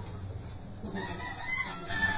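Rooster crowing over a steady low rumble. The crow starts about a second in and lasts about a second.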